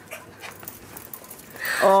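Small dog, a Bichon Frisé, panting faintly with small scuffling noises, then a loud, high-pitched voice greeting the dog near the end.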